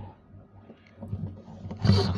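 A pause with a low steady hum and a few faint soft clicks, then a man's voice starting near the end.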